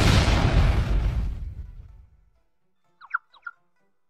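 Cartoon explosion sound effect for a buried clay pot of gunpowder going off: a sudden loud blast with a deep rumble that dies away over about two seconds. Near the end come three short high chirps.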